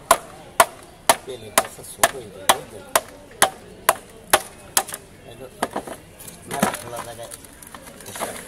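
A wooden stick hammers the back of a large blade to drive it through the head of a giant catla carp. There are sharp knocks about two a second for some five seconds, then lighter knocks and one longer, rougher sound.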